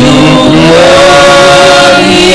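Loud gospel singing, led by a man's voice through a handheld microphone, holding a long note that rises slightly about half a second in.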